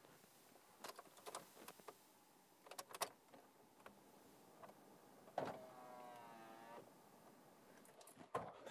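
Keys clicking at the ignition of a Toyota car, then a starter motor whines for about a second and a half as the engine is cranked.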